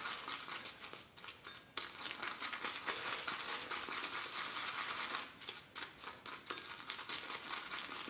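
Synthetic shaving brush scrubbing and pressing loose chunks of shaving soap in a ceramic lather bowl: a soft, continuous scratchy crackle of bristles and soap bits against the glazed bowl, with a few brief pauses.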